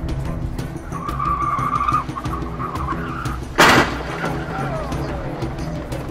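Motorcycle-into-car crash test at about 37 mph: a tire squeal of about two and a half seconds, then one loud crash of the impact about three and a half seconds in, followed by falling scraping sounds as wreckage slides on the pavement.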